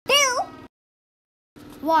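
One short, wavering meow right at the start, about half a second long.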